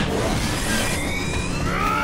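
Anime battle sound effect: a loud, sustained rushing blast of energy. A character's scream begins near the end.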